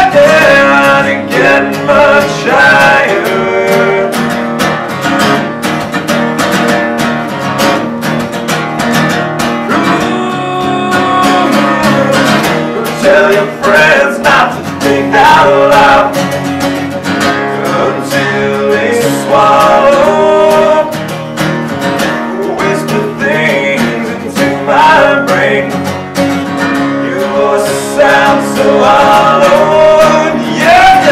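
Two acoustic guitars strummed and picked together in a live unplugged rock performance, with a male lead vocal singing over them in stretches.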